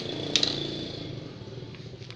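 A sharp metallic clink about a third of a second in, ringing briefly at a high pitch and fading over about a second, with a softer click just before it, over a low steady hum.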